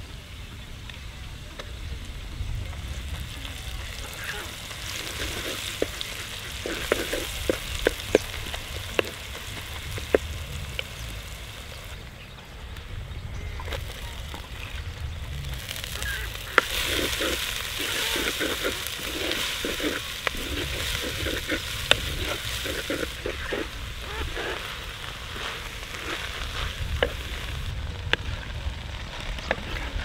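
Garlic and red chilli paste sizzling in hot oil in a clay pot, with a spatula scraping and knocking against the pot as it is stirred. About halfway through, the frying gets louder as chopped purslane leaves go into the oil and are stirred with a wooden spatula.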